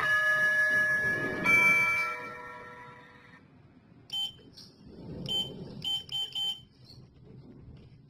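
Schindler elevator's two-note electronic arrival chime, the second note higher, ringing out and fading over about three seconds. About four seconds in come five short electronic beeps.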